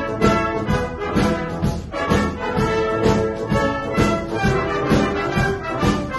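Concert wind band playing an instrumental passage of a pop song, brass to the fore over a steady drum beat.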